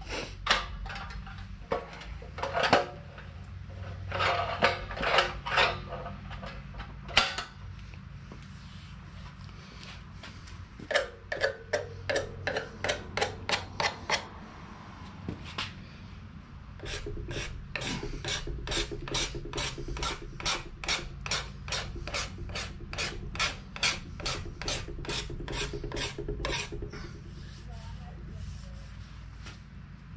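A hand tool is drawn in repeated strokes along a wooden ax handle, shaping the wood. The strokes come in short groups at first. Then comes an even run of about two to three strokes a second that stops a few seconds before the end.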